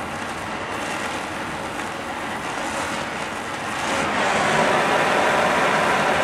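Gas torch flame hissing steadily against a steel bar, preheating it to about 300 °F before welding. The hiss gets a little louder about four seconds in.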